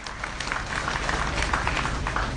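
Audience applauding, a dense patter of many hands clapping over a steady low hum.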